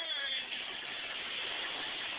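Steady road and engine noise heard inside a moving car's cabin, an even hiss. In the first half second a high voice trails off, falling in pitch.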